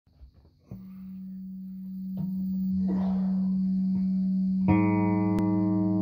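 Stratocaster-style electric guitar played through effects: a steady held note comes in about a second in and sustains, then a chord is struck near the end and rings on over it.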